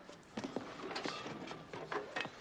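Faint scuffs and a handful of sharp knocks from boots and gear as soldiers clamber down off a tank onto rocks.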